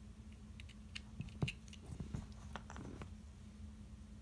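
Faint clicks and scratchy rustling of a LiPo battery's plastic plugs and wire leads being handled and fitted into a charger's balance board, with one sharper click about one and a half seconds in. A steady low hum runs underneath.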